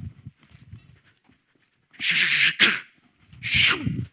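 A man's loud, breathy vocal bursts: two hissing exhalations about two seconds in and a third near the end that ends in a falling voiced sound, with faint thumps earlier.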